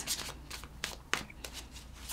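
A deck of tarot cards being shuffled by hand from one hand to the other: faint soft card-on-card sliding with scattered small clicks, one sharper click about a second in.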